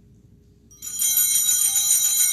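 Altar bells ringing at the elevation of the chalice during the consecration. A sudden bright, shimmering peal of many high tones starts under a second in and keeps ringing.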